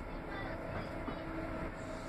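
Cabin noise inside a Northern class 195 diesel multiple unit on the move: a steady low rumble of wheels on rail and running gear, with a faint steady whine.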